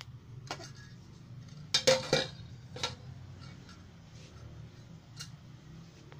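A few sharp clicks and metallic clinks from handling a metal cooking pot and its lid, the loudest cluster of about three about two seconds in. A low steady hum runs underneath.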